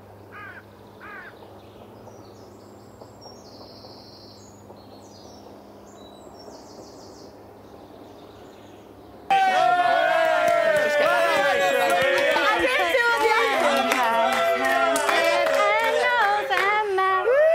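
A quiet stretch with a faint steady hum and a few soft voices. About nine seconds in, many voices start all at once, loud and overlapping, with long held, wavering notes like a group singing or chanting.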